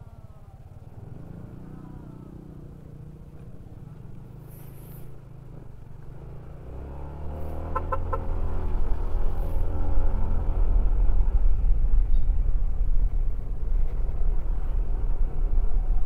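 A Yamaha NMAX's single-cylinder scooter engine running low at a crawl in traffic. About seven seconds in, it speeds up and the sound swells into a loud, steady low rumble of engine and wind.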